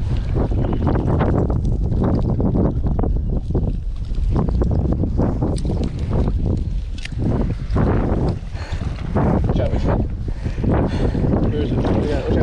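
Wind buffeting the microphone in a steady low rumble, with irregular rustling and knocking from the camera rubbing against clothing and gear.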